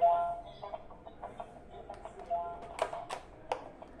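Battery-powered frog-shaped pop-it game toy: a loud electronic beep right at the start and another short run of beeps about two seconds in, with irregular clicks as its silicone buttons are pressed.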